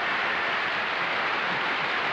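Studio audience applauding: steady, dense clapping with no break.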